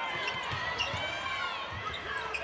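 A basketball being dribbled on a hardwood court: a steady run of low bounces, with crowd voices faint behind.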